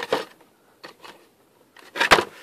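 A few sharp clicks of plastic parts being handled by hand in a car's engine bay: two close together at the start, then two fainter ones about a second in.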